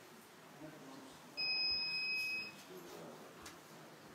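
A single high, steady electronic beep lasting about a second, starting a little over a second in and cutting off sharply. Faint murmuring voices and room sound run beneath it.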